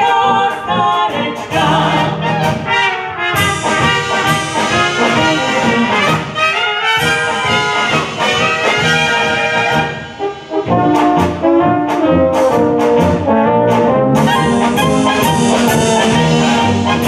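Czech Slovácko-style brass band playing live: trumpets and tubas over drums. The music breaks off briefly about ten seconds in, then the full band comes back in.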